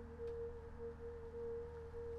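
A soft background music note: one steady pure tone held without change, over a faint low hum.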